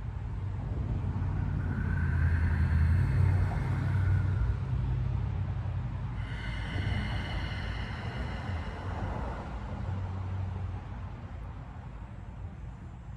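A low rumble that swells over the first few seconds and then fades, with a steady higher whine joining about six seconds in and dying away near nine seconds.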